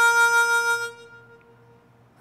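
Solo harmonica holding one long, steady note that fades away about a second in, leaving a short pause before the next phrase.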